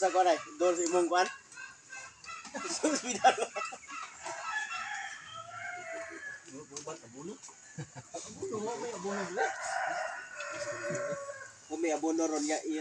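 A rooster crowing near the start, with chickens clucking.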